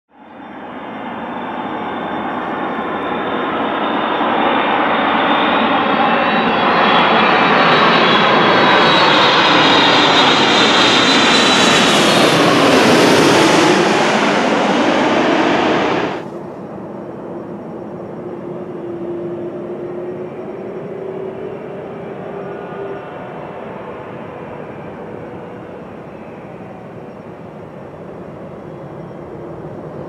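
Japan Airlines Boeing 787-8 jet engines swelling from a distance to very loud as the airliner passes low overhead on landing, the engine whine sliding down in pitch as it goes by. The sound cuts off abruptly about sixteen seconds in. A much quieter, steady distant jet rumble of the airliner on the runway follows.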